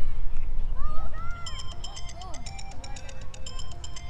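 Voices of players and spectators calling out across a soccer field over a steady low rumble. A rapid, evenly repeated high-pitched chirping starts about a second and a half in.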